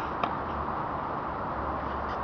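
A single sharp tennis-ball impact about a quarter of a second in, over a steady outdoor background hiss.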